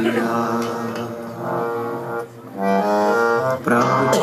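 Harmonium playing sustained reed chords in a Sikh kirtan, with a short break a little past halfway.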